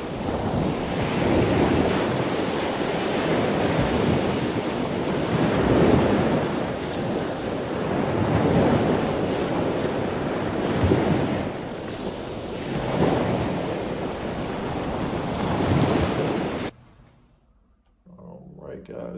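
Loud rushing noise, like surf or wind, swelling and easing every couple of seconds, then cutting off suddenly near the end.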